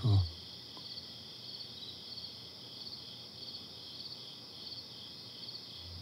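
Crickets chirping in an even, steady rhythm, a little under two chirps a second, over a continuous high trill.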